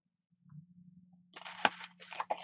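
Faint steady low hum, then about a second and a half in, a stack of paper prints rustling as it is handled, with one sharp tap.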